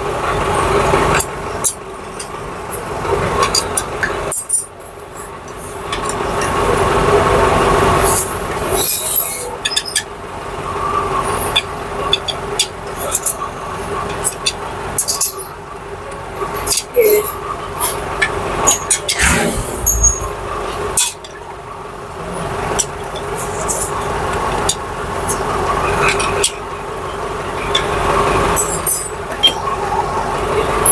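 Metal hand tools clinking and clicking as bolts are fitted and tightened on an engine's seal housing, in irregular short knocks over a steady hum.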